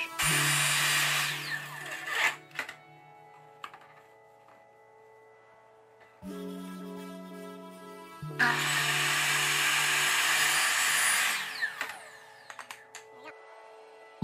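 Craftsman miter (chop) saw cutting 4-inch ABS plastic pipe twice: each time the motor runs up and the blade cuts through the pipe, about two to three seconds, then the blade winds down with falling pitch. Background music plays quietly between the cuts.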